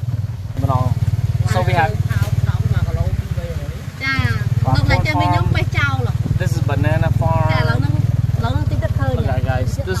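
Motorcycle engine of a tuk tuk carriage running steadily as it rides along, a low drone that eases briefly about four seconds in. Voices talk over it for most of the time.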